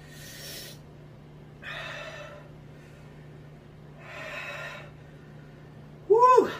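A man breathing out hard through his mouth three times, about two seconds apart, the breath of someone fighting the burn of a very hot food.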